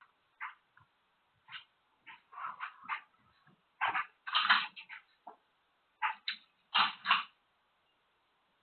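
An old German Shepherd gives about a dozen short whimpering cries and yelps, some in quick pairs, loudest in the middle and near the end; they are the distressed cries of a dog in his last moments before dying. The cries are heard through a security camera's thin-sounding microphone.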